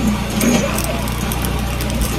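A steady low engine hum, like a motor idling, with a few faint voice fragments.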